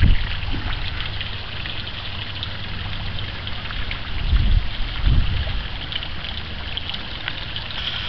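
Garden pond fountain jet spraying up and splashing back onto the pond surface, a steady patter of falling water. A few brief low rumbles come at the start and again about four to five seconds in.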